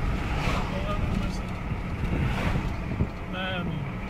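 Steady low road and engine rumble inside a moving car, with two swells of wind noise about half a second and two and a half seconds in. A short burst of voice comes near the end.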